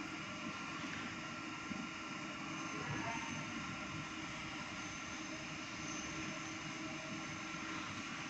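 A steady mechanical hum with no breaks or distinct knocks.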